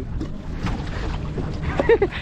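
Wind rumbling on the microphone over sea and boat noise as a wet nylon fishing net is hauled over the gunwale, with a brief voice calling out near the end.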